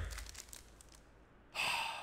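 Foil trading-card pack wrapper crinkling in the hands as it is picked up and held up, with one short crackle about one and a half seconds in.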